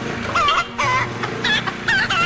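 A hen clucking in four short, wavering calls about half a second apart, over background music.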